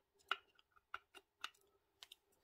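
A few faint clicks from a Skoda A7 1.4 turbo's engine thermostat and its spring being pushed by hand into the thermostat housing, over a faint steady hum.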